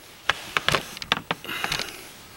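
A quick run of sharp clicks and knocks, about eight in a second and a half, then softer rattling, as things are handled.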